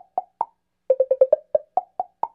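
Background music: a looping phrase of short, dry, percussive notes, a quick run of about six low notes followed by a few higher ones, repeating after a brief gap.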